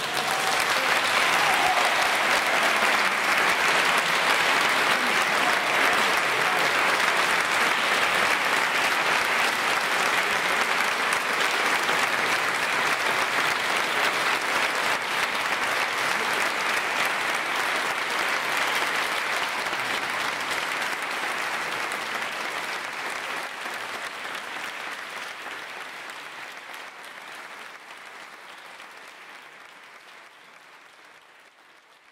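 An audience applauding, steady for about twenty seconds and then fading out gradually over the last ten.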